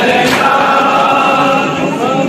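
A crowd of men sings a noha chorus together, holding long, steady notes. There is a sharp slap near the start, typical of a hand striking the chest in matam.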